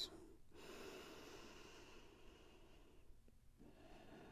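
Near silence, with a faint, soft breath through the nose lasting a couple of seconds.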